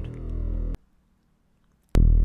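Low, buzzy synthesizer drone from ten summed VarSaw sawtooth oscillators, each slightly detuned around 40 Hz. It stops abruptly under a second in. About a second later it starts again with a loud pop, which comes from all the oscillators beginning at the same zero phase.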